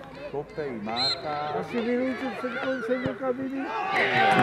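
Spectators' voices talking beside a football pitch, with one short thud about three seconds in as the penalty kick is struck.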